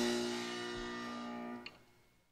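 The band's last chord of the song ringing out and slowly fading, then cutting off abruptly with a small click just before the end.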